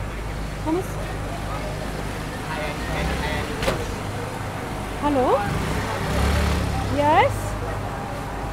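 Busy city street ambience: a steady low drone of engines and traffic with voices in the background. There is a sharp click near the middle, and two short calls swoop up and down in pitch near the end.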